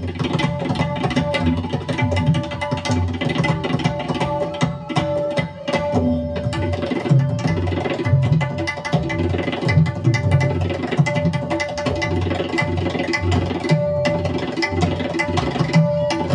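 An ensemble of tabla players drumming together in a dense, rapid stream of strokes, with the deep bass drums and the tuned treble drums both sounding and a steady held note underneath.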